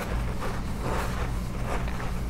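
Steady low hum with an even hiss of background noise.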